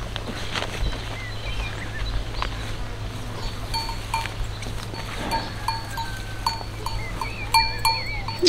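Small bell on a young water buffalo's collar clinking in a quick, irregular series as the animal moves its head while feeding, starting about halfway through.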